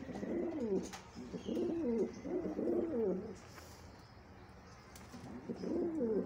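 Pigeon cooing: a run of low, rolling coos that rise and fall in pitch, breaking off a little past halfway and starting again near the end.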